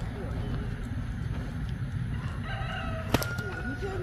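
A rooster crowing in the background about two and a half seconds in, ending on a held note. A single sharp crack comes a little after three seconds.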